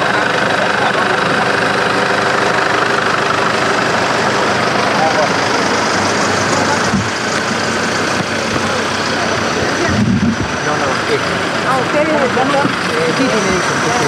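A vehicle engine idling steadily, with people talking in the background from about midway.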